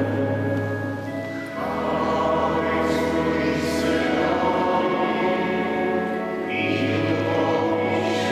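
A congregation singing a hymn in a church, accompanied by organ, with long held chords over steady bass notes; the chord changes about a second and a half in and again near the end.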